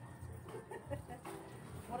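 A few short, faint animal calls in quick succession in the background, with a woman's voice starting at the very end.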